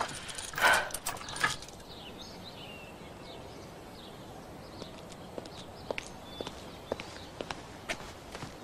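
Footsteps on dry twigs and undergrowth: sparse, irregular sharp cracks in the second half, with faint birds chirping. A short loud rush of noise about half a second in stands out as the loudest sound.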